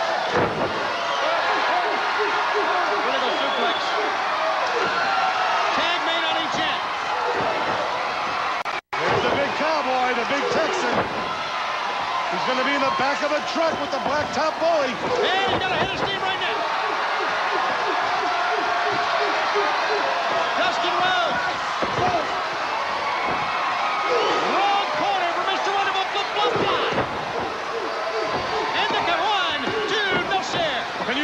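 Arena crowd noise with the thuds of wrestlers' bodies slamming onto the ring mat. The sound cuts out for an instant about nine seconds in.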